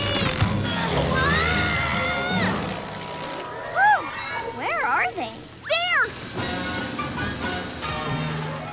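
Cartoon soundtrack: music with a long rising tone that holds, then several short rising-and-falling pitched cries or whistles in the second half, over a low steady drone.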